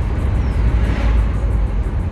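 Steady low rumble of a minibus's engine and tyres heard from inside the cabin while driving, with a brief swell of noise about halfway through.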